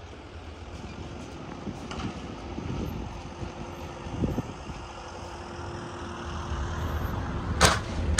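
Motor yacht tender's engine running as it manoeuvres, its propeller wash churning the water, with a steady hum that sets in about three seconds in and a rumble building toward the end. A sharp knock near the end.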